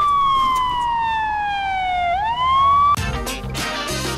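Siren wailing: one tone that falls slowly in pitch for about two seconds, then swings back up. It is cut off about three seconds in by music with a beat and record scratches.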